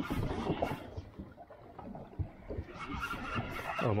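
A spinning reel being cranked to winch up a hooked fish on a hard-bent rod, its gears whirring. The cranking stops for a second or two midway, then picks up again.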